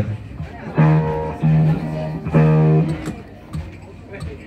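Electric guitar through an amplifier sounding the same sustained note about three times, each held for a fraction of a second, as it is being tuned.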